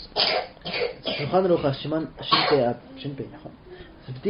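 A man speaking in a language the English recogniser does not transcribe, most likely the Kuki interpretation of the rabbi's answer.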